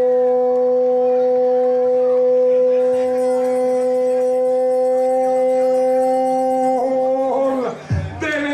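A man's voice holding one long drawn-out note at a steady pitch for about seven seconds, running straight on from speech and breaking back into speech near the end.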